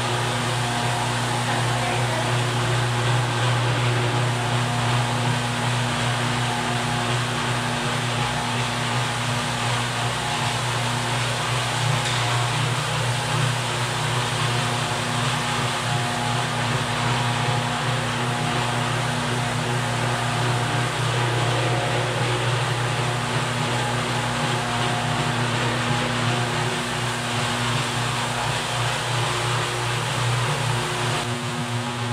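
Rotary floor machine running steadily, its motor giving a constant low hum while the pad scrubs a wet terrazzo floor to strip off old wax finish.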